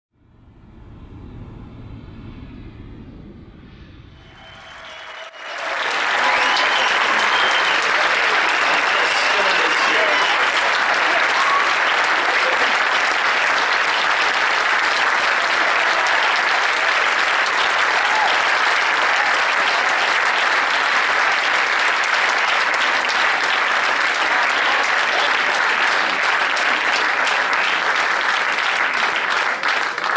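A large audience applauding: a few seconds of quieter sound, then a dense, loud, steady wave of clapping from about five seconds in, mixed with some voices from the crowd.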